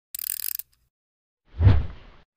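Intro sound effects over an animated title: a brief rattle of rapid clicks lasting about half a second, then a low boom with a swoosh about a second and a half in, fading out.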